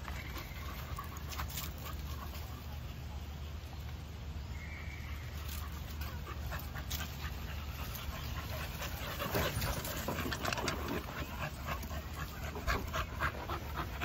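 Dogs panting while moving about on dirt, the panting quick and rhythmic and louder in the last few seconds as the dogs come close, over a steady low background rumble.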